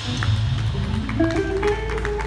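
Live band music from drum kit, bass guitar and electric guitar playing bossa nova, with a short climbing run of plucked notes about a second in.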